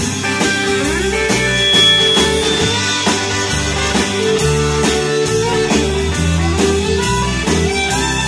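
Live band playing an instrumental passage without vocals: electric guitar over bass and drums keeping a steady beat.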